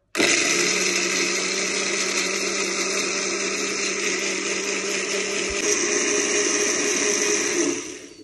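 Panasonic countertop blender's small grinding jar switched on, running steadily at speed as it grinds chilies and other spices into a paste, its tone shifting slightly over halfway through; it winds down and stops just before the end.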